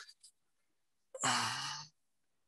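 A man's breathy, voiced sigh or exhale of effort, just under a second long and fading out, about a second in.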